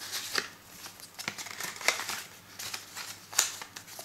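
Small paper coin envelopes and a folded banknote handled by hand: irregular rustles and crinkles of paper, with sharper ones about two seconds in and again near three and a half seconds.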